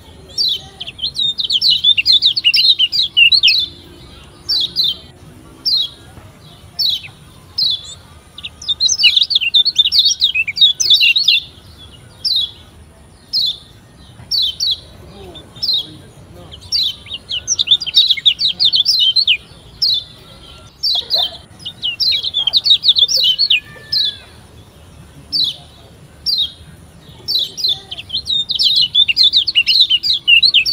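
Yellow white-eye (kecial kuning, the Lombok pleci) calling: short high chirps about once a second, broken every nine seconds or so by two- to three-second bursts of rapid twittering song.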